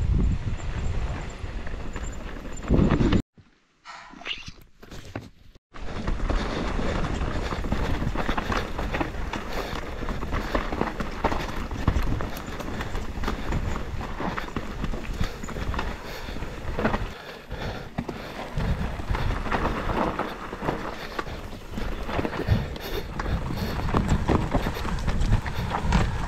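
Mountain bike ridden down a rough dirt forest trail: a dense, irregular rattle and clatter of tyres, chain and frame over roots and stones, with wind rumble on the microphone. The sound drops low for a couple of seconds about three seconds in, then the clatter runs on.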